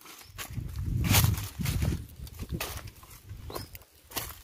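Footsteps crunching through dry fallen leaves and twigs on a forest trail, irregular steps throughout, with a low rumble, loudest about a second in.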